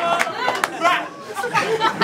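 Crowd of people talking over one another, several voices overlapping in a packed room, with a few sharp claps or knocks.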